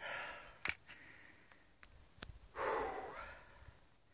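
A man breathing hard: two long, breathy exhales about two and a half seconds apart, the second the louder, with a few soft clicks between.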